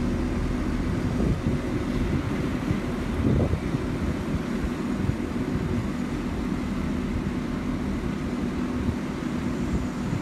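Crane's diesel engine running steadily, a low, even hum, with wind rumbling on the microphone and a couple of brief knocks in the first few seconds.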